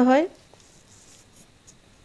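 Faint, soft scraping of a kitchen knife slicing through a rolled dough log on a granite countertop, with a light tick of the blade on the stone about one and a half seconds in.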